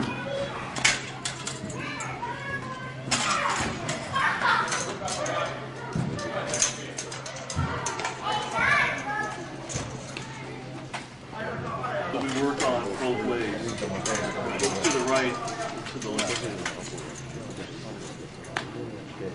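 Indistinct chatter of several voices in a large hall, thickest in the last third, with scattered short knocks and clicks and a steady low hum underneath.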